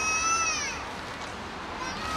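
A long, high-pitched vocal squeal that falls away about a second in, and a shorter one near the end, over a low murmur of the crowd.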